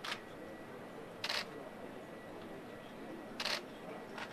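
Camera shutters clicking in three short bursts, one right at the start, one just over a second in and one near the end, over a quiet, steady background.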